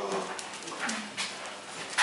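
Bear cubs whimpering as they play, with a few short knocks.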